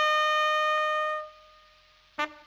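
Trumpet fanfare ending on one held note, which fades away a little over a second in.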